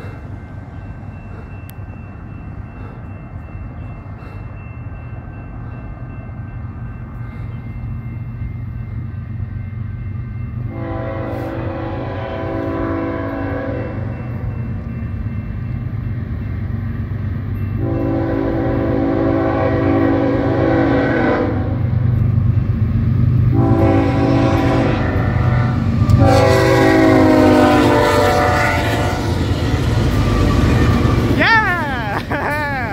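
BNSF diesel freight locomotives approaching a grade crossing: a low engine rumble grows steadily louder, and the horn sounds the crossing signal of four blasts, long, long, short, long. The last blast is the loudest and falls slightly in pitch as the lead locomotive reaches the crossing.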